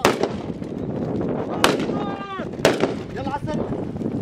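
Three sharp gunshots about a second apart, fired during a live-fire obstacle drill, over a steady rumble of outdoor noise.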